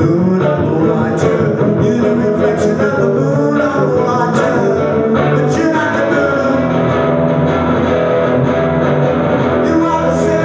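Live rock song: a man singing into a microphone over his own strummed guitar, played loud and steady.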